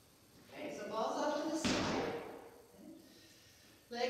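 One heavy thud about one and a half seconds in, an exercise ball being dropped onto the rubber gym floor, with a woman talking around it.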